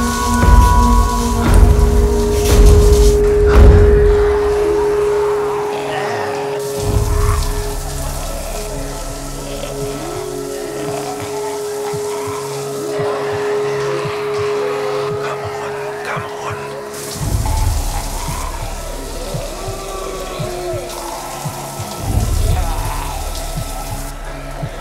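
Tense horror film score: heavy low booms in the first few seconds, then a long held note that cuts off after about seventeen seconds, with scattered moaning voices over it.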